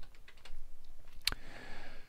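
Typing on a computer keyboard: a few separate keystrokes, with one louder click about a second and a quarter in.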